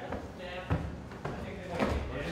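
Footsteps going down a flight of stairs: three thuds about half a second apart, with brief voices in the background.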